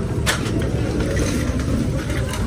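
Busy street commotion: a steady low rumble with one sharp knock shortly after the start, as wooden crates and bagged goods are thrown about on the pavement.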